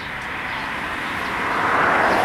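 A passing vehicle, heard as a rushing noise that swells steadily to a peak near the end.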